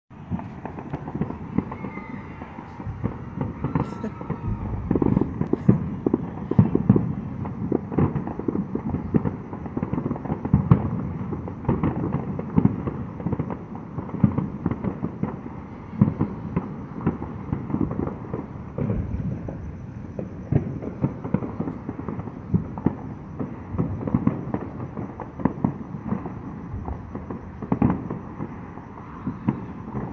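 Neighborhood consumer fireworks and firecrackers going off all around: a dense, irregular crackle of pops and bangs, several a second, with louder booms scattered throughout.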